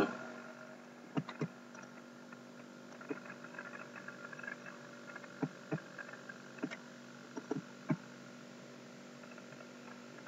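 Faint steady electrical hum, with about ten short soft clicks scattered through it.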